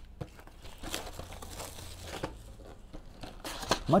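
Plastic shrink wrap being torn and crinkled off a sealed trading-card box, with irregular crackles and rustles.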